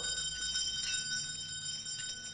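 Several house bells ringing on together: many high tones held steady over a low hum.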